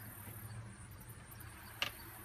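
Quiet outdoor background with a low steady hum and one short click near the end.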